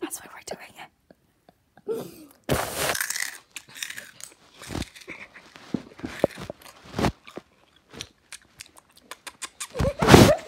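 ASMR-style whispering close to a phone microphone, broken by scattered sharp clicks and crackles, with near-silent gaps between them.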